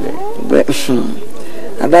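A person's voice making a brief, harsh vocal sound in the first second, then a lull.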